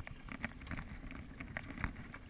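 Kayak paddle strokes in calm river water: the blade dipping and splashing, with many small splashes and drips along the hull and a sharper splash near the end.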